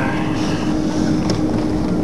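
Steady cabin noise inside an Airbus A330-200 rolling on a snowy runway after landing: a continuous rumble of engines and wheels with a steady hum running through it.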